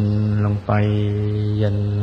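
A man's voice speaking Thai very slowly in a level, chant-like monotone, drawing out two words: a short one, then a brief break and one held for over a second. This is spoken meditation guidance.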